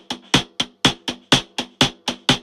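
Unprocessed contact-microphone drum track played back solo: evenly spaced sharp, clicky strokes about four a second, each with a short low ring under it and a harsh ringing tone high up that needs heavy EQ cuts.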